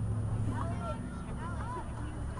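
Steady low rumble with faint, distant voices calling out in short rising-and-falling shouts, several in the second half.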